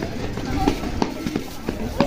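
A group of children chattering and calling out at a distance, with running footsteps on a paved road.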